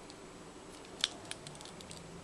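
Quiet room tone with a short cluster of small, sharp clicks and ticks about halfway through, the first one the loudest.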